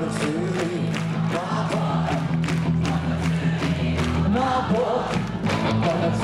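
Live rock band playing on stage with singing voices over it, a steady drum beat and a held low bass note.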